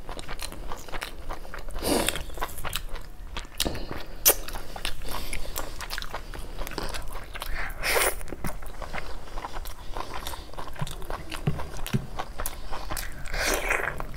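A person chewing and biting mouthfuls of mutton curry and rice eaten by hand, with a steady run of small wet mouth clicks and louder bites about two, four and eight seconds in and again near the end.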